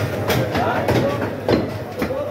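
Butchers' blades chopping on wooden chopping blocks: irregular sharp knocks, the loudest about a second and a half in, over the steady chatter of a busy meat market.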